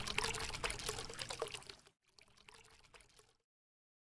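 Water sound effect of pouring and splashing, full of small bubbly pops, that dies away in the second half.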